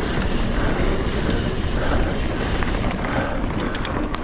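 Full-suspension mountain bike rolling fast along a dirt singletrack on knobby Maxxis Minion tyres, with wind rushing over the camera microphone. Scattered clicks and rattles come through, most of them near the end.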